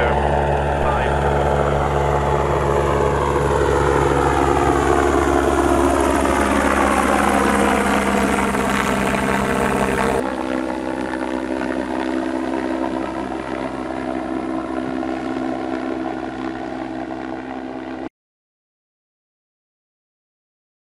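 Solar Impulse 2's four electric-motor-driven propellers humming steadily as the aircraft lifts off and climbs away, with a sweeping, falling whoosh as it moves past. About 10 seconds in the sound changes abruptly to a quieter steady propeller hum, and it cuts off suddenly near the end.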